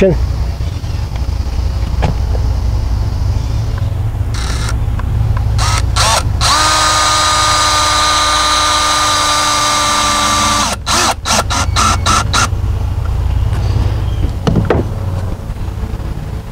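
Cordless drill driving a screw into a wooden deck top rail. A few short bursts about five seconds in are followed by a steady motor whine for about four seconds, then a quick run of clicks as it stops.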